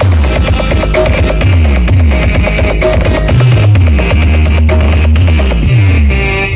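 Electronic dance music played very loud through a huge outdoor battle sound system. It carries a heavy sustained bass line and deep bass notes that drop in pitch again and again.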